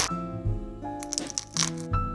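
Cartoon bone-cracking sound effects, cracks like joints popping: one loud crack at the start, then a few more about a second in and near the end. Gentle background music plays under them.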